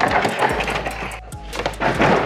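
A black plastic pallet being lifted and slid off the top of a cardboard gaylord box, then the box's cardboard lid flap pulled open: a loud burst of scraping and rustling that starts suddenly, eases off briefly and comes back near the end. Background music plays underneath.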